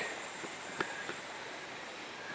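Steady outdoor background hiss with a few faint, light clicks.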